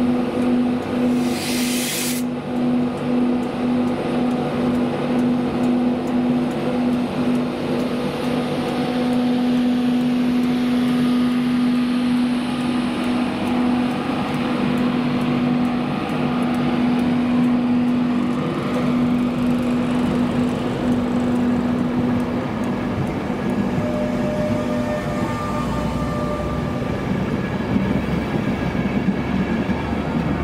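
LNER Class 91 electric locomotive hauling Mk4 coaches along the platform: a steady electric hum from the locomotive that fades as it draws away, under the rolling noise of the coaches passing. A short burst of hiss about a second in.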